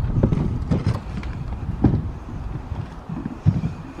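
Footsteps on hard ground: a few irregular dull thuds over a low rumble.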